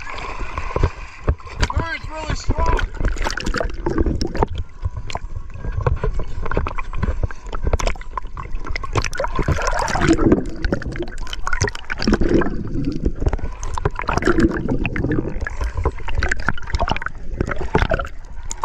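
Sea water sloshing, gurgling and splashing around a waterproof action camera held at the surface and dipping underwater, with many small crackles and a low rumble.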